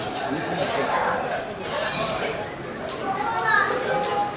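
Crowd chatter: many overlapping, indistinct voices of spectators, children's voices among them.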